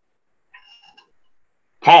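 A pause in speech: near silence with one faint, brief tonal sound about half a second in, then a voice resumes speaking just before the end.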